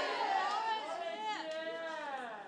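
Several high-pitched voices chattering and calling out over one another, fading away toward the end.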